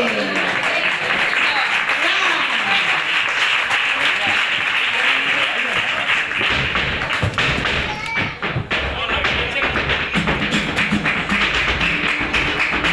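Live flamenco: rhythmic hand-clapping (palmas) with flamenco guitar. About halfway through, low thuds from the dancer's footwork join in.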